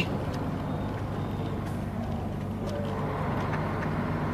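Truck engine and road noise heard from inside the cab while driving along at steady speed: an even low hum with tyre noise.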